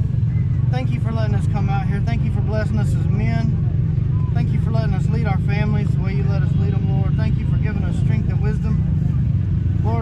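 A person praying aloud, speaking steadily throughout, over a continuous low rumble.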